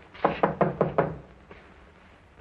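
Knuckles rapping on a ship's cabin door: a quick run of about five knocks in the first second, then stillness.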